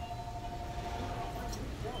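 Restaurant dining-room background: a steady low hum with faint voices, and a steady high tone that holds for about the first second and a half, then stops.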